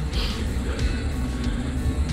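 Steady low rumble of wind and road noise while riding a bicycle along smooth fresh asphalt, with a short hiss about a quarter second in.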